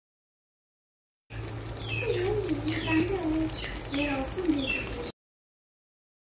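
Bird calls: short high chirps over a low wavering call, with a steady hum underneath. The sound begins about a second in and cuts off suddenly about a second before the end.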